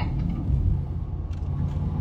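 Steady low rumble of a car heard from inside its cabin, engine and road noise picked up by a phone's microphone.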